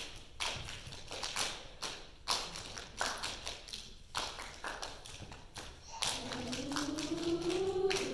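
Rhythmic hand claps from a choir, about two a second, as a percussion break in a song. A few seconds in, the choir's singing returns with a rising line.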